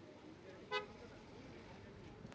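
A vehicle horn gives one short toot about three-quarters of a second in, over a low murmur of voices.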